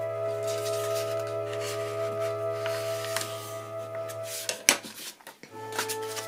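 Soft background music of long held chords that fade out about four and a half seconds in, with a new chord coming in near the end. A sharp tap and light rustle of paper sheets being handled come with the fade.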